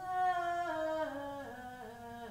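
A single unaccompanied voice chanting a melismatic line: it holds a long note and then steps down in pitch through ornamented turns, loudest about a second in.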